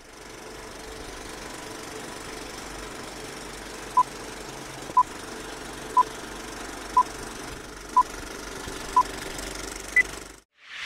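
Steady background noise, with six short electronic beeps at one-second intervals starting about four seconds in, followed by a single higher beep at the end, in the manner of a countdown.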